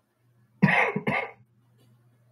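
A person coughing twice in quick succession, about half a second in, over a faint steady low hum.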